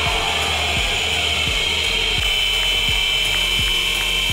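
Several small motorcycle engines running together at high revs in a Globe of Death stunt show, a steady, high buzzing whine.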